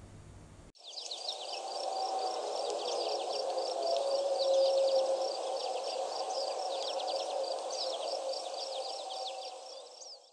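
Outdoor nature ambience that starts about a second in: quick, repeated high chirping over a steady lower hum, fading out at the end.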